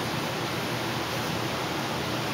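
A steady hiss of background noise with no distinct event in it.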